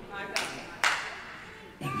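Two sharp handclaps about half a second apart from a listener in the congregation.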